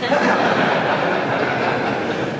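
A roomful of people laughing together, a dense, steady wash of laughter that eases slightly near the end.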